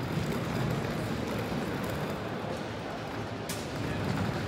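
Steady, reverberant ambience of a large hall: indistinct movement and background noise with no clear voices, and one short click about three and a half seconds in.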